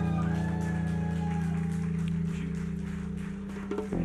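Live acoustic band music: a held guitar and bass chord rings on and slowly fades, then fresh plucked notes come in near the end.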